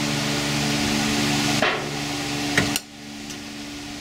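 A couple of short clicks and knocks from the steel parts of a desktop computer case being handled, over a steady background hum and hiss that drops away suddenly a little under three seconds in.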